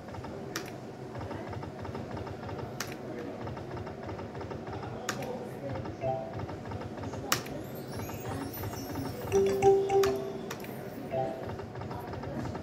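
Online slot game sounds: a busy run of clattering reel-spin clicks and short chiming tones, with a sharp click about every two seconds as spins start and stop.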